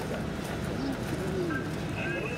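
A dove cooing, a few short rising-and-falling coos over steady outdoor background noise.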